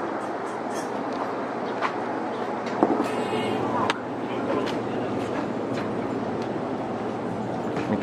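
Steady hum of an 817 series electric commuter train standing at the platform with its doors open, with faint voices and a few light knocks of footsteps as passengers board.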